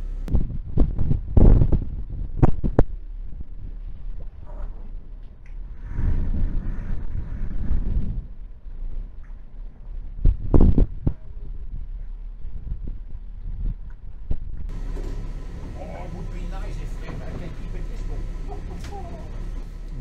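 Steady low hum of the boat's engines running, broken by several loud knocks and thumps in the first few seconds and another about ten seconds in.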